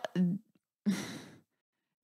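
A person's breathy sigh, about half a second long and fading out, about a second in, after a brief clipped bit of speech.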